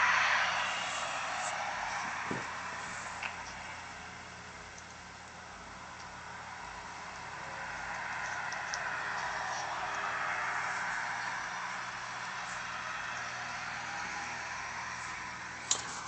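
Street traffic recorded by a BlackBerry Torch's camera, heard in playback through the phone's small speaker: a hiss of cars passing. It is loudest at the start, dips, then swells again about ten seconds in.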